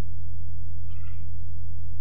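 Steady low electrical hum, with a faint, brief high-pitched tone about a second in.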